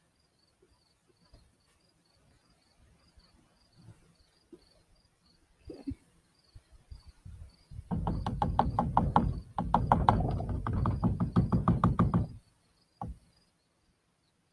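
Insect chirping in a steady series of faint high chirps, about three a second. About eight seconds in, a loud, rapid run of knocks or rattling cuts in and lasts about four seconds.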